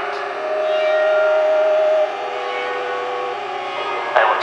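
Sustained electronic tones in a music mix: one held note for about two seconds, then a lower held note, over a steady droning pad.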